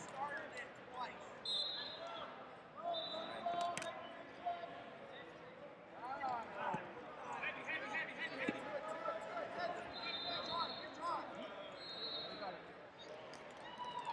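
Overlapping voices calling out in a large arena hall, with several short high squeaks of wrestling shoes on the mat and one sharp slap a few seconds in.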